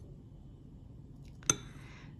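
A single sharp clink of a porcelain saucer against the rim of a Turkish coffee cup about one and a half seconds in, ringing briefly; otherwise faint room hiss.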